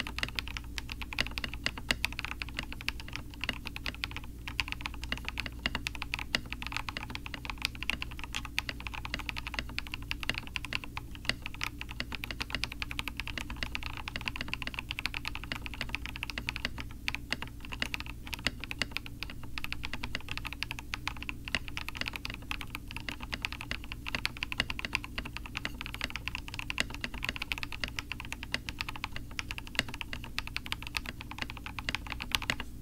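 Continuous, rapid typing on a Rama Works Kara mechanical keyboard with KTT Peach linear switches and C3 stabilizers, both lubed with Krytox 205g0, and PBT keycaps, built with no case dampener: a dense, steady stream of keystroke clacks. Viewers found the sound a little hollow.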